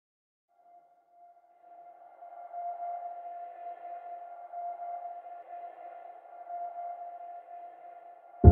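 A single steady electronic tone with faint overtones, fading in about half a second in and swelling over the next two seconds: the sustained opening drone of a music track.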